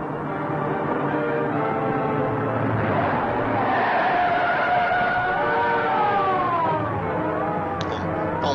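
Old film soundtrack of a car chase: car engine noise mixed with dramatic music. From about four seconds in, long high tones slide slowly downward.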